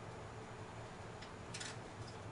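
Quiet room tone with a steady low hum, broken by two faint, brief ticks about a second and a second and a half in.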